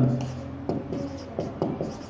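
Marker pen writing on a whiteboard: a handful of short, faint scratchy strokes as letters are drawn.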